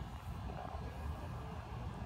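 Low, steady rumble of wind on the microphone.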